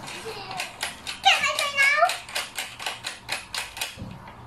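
Rapid, even clicking, about five clicks a second, as the saddle clamp of a stationary exercise bike is tightened by hand.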